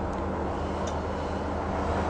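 Steady low hum with hiss, the background noise of the recording, with no speech.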